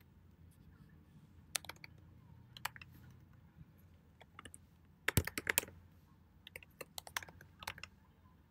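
Computer keyboard typing in short bursts of keystrokes, with the densest flurry about five seconds in.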